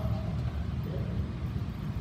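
Steady low rumble, with a man's brief spoken 'yeah' about a second in.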